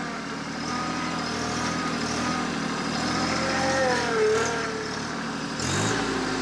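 TYM T264 compact tractor's diesel engine running steadily while its hydraulic loader works a grapple against a small tree's roots. Near the end the engine revs up as the throttle is raised for more hydraulic flow.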